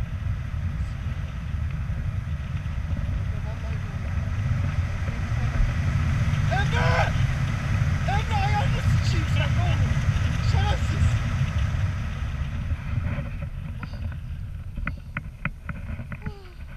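Wind rushing over the camera microphone in flight under a paraglider, a loud low rumble that swells in the middle and eases near the end.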